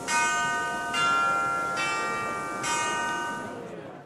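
Short musical logo sting of bell-like chimes: four chords struck about a second apart, each ringing on, fading out near the end.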